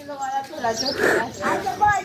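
A man's voice in short, strained vocal sounds as he hoists a sack of about sixty kilos of wheat grain.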